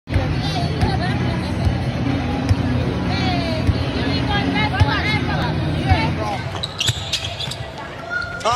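Indoor sports-arena sound: a ball thudding on the court about once a second over a steady low hum, with voices and chatter around it.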